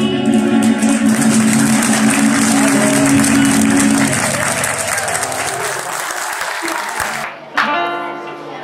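Audience applauding over the final chord of a song played on acoustic guitars; the chord stops about four seconds in and the applause runs on a few seconds more before dying away. New music starts near the end.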